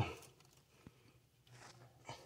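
Near silence, broken by one faint short click just under a second in and a faint soft sound near the end.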